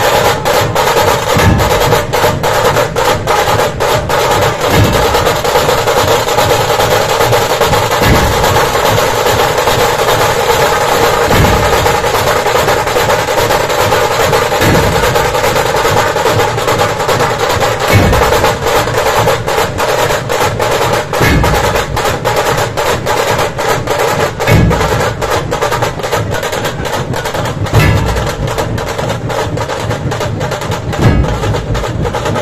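Puneri dhol-tasha troupe playing at full strength: many dhols beating together under a continuous rapid tasha roll. Deep, heavy accented dhol strokes land together about every three seconds.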